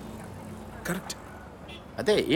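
A steady low background rumble of outdoor ambience, with one short spoken syllable or word about a second in.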